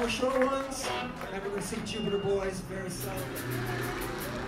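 Amplified live band between songs: instruments sounding loosely under talking voices, with a low note held near the end.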